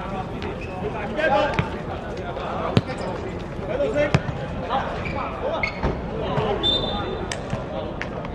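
A football kicked on a hard court: several sharp thuds, the loudest about three and four seconds in, with players shouting to each other during play.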